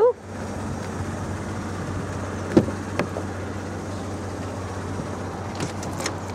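Two sharp clicks, about two and a half and three seconds in, as a car door is unlatched and opened. A steady low hum runs underneath.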